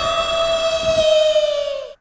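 A man's long, high-pitched wail of "Mommy!", held on one note, dipping slightly in pitch before it cuts off suddenly near the end.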